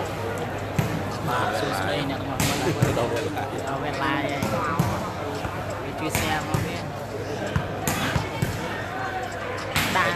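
A volleyball struck several times during a rally, sharp hits of hands on the ball, over the steady chatter and shouts of a crowd in a large hall.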